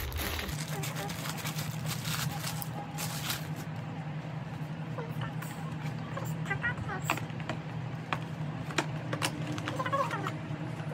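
Indistinct background voices over a steady low hum that sets in about half a second in, with scattered light clicks.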